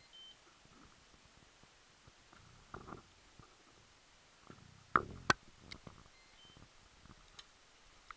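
A few knocks and sharp clicks from handling and moving about on a fibreglass boat, the loudest two coming close together about five seconds in, over a quiet background. Two faint, short high beeps sound near the start and again later.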